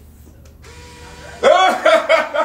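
A low steady hum, then about one and a half seconds in a loud, high-pitched excited vocal outburst from a young man, whooping and laughing rather than speaking words.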